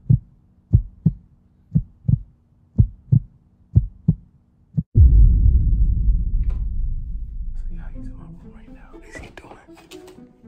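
Heartbeat sound effect: paired low lub-dub thumps about once a second over a low steady hum, about five beats. About five seconds in a sudden deep boom cuts in and fades away over a few seconds.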